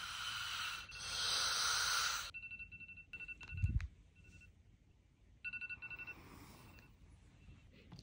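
Smartphone alarm going off as rapid, evenly repeated high beeps in two short stretches, the first about two seconds in, with a short low thump between them. A steady hiss comes before the beeps.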